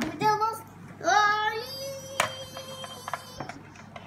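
Young child's voice singing two short sing-song phrases, then holding one steady note for nearly two seconds. A sharp click falls about halfway through, with a few lighter clicks near the end.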